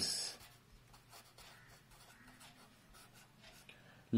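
Marker pen writing on paper: faint, irregular scratching strokes.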